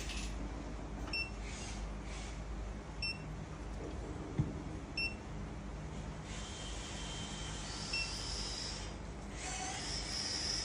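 Short, high electronic beeps about every two seconds over a steady low hum, with a faint high hiss coming in about six seconds in.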